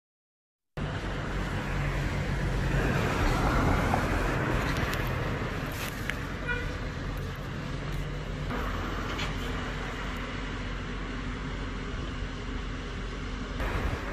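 Road traffic on a city street: passing cars over a steady low rumble, with one vehicle louder a few seconds in. The sound cuts in abruptly just under a second in, after silence.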